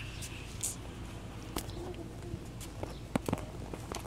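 Handling noise of a phone camera being set up: a few sharp clicks and knocks, one about one and a half seconds in and several close together near the end, over a low steady outdoor hum, with light footsteps on asphalt.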